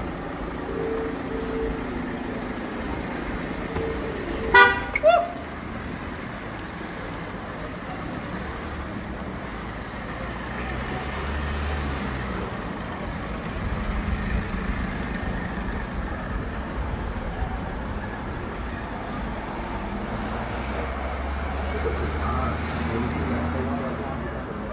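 Town-centre street traffic: cars running past with a low engine rumble now and then. A brief car horn toot about four and a half seconds in is the loudest sound.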